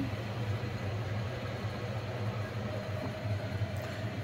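A steady low mechanical hum from a running motor, with a faint even hiss over it.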